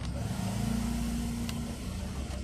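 Steady engine hum of a passing motor vehicle, swelling and then fading. There is a single sharp click about one and a half seconds in, as the plastic front panel of the set-top box is handled.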